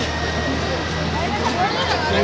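Busy city street noise: a steady low hum of engines and traffic, with voices of people nearby talking.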